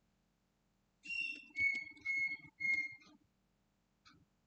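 A whistled call of four short, clear notes starting about a second in: one higher note, then three lower notes of the same pitch repeated evenly.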